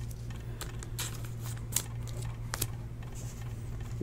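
Trading cards being handled and set down on a table: a few scattered light clicks and ticks over a steady low hum.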